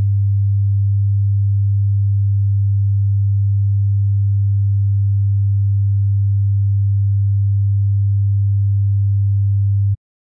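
A pure 100 Hz sine-wave test tone: a low, steady tone of unchanging pitch and level that cuts off suddenly near the end.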